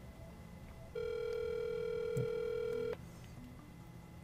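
Telephone ringback tone through the car's hands-free call audio: one steady ring lasting about two seconds, the signal that the dialed number is ringing at the other end.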